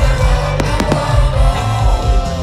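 Music with a steady low beat and a gliding sung or melodic line. Over it, two sharp firework bangs come a little after half a second in, from aerial shells bursting overhead.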